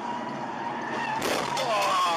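Steady road noise inside a car driving at highway speed. A little over a second in comes a sudden, louder noise, followed by a wavering high-pitched sound that bends up and down.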